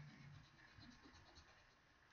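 Faint scratchy rubbing of a pencil's eraser on paper, rubbing out pencil lines, fading out about halfway through.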